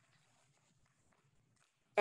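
Near silence: faint room tone in a pause between speech.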